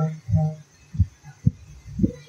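A sung line of a Bengali devotional verse ends with a held note. Then come three soft, low thumps about half a second apart, a slow beat.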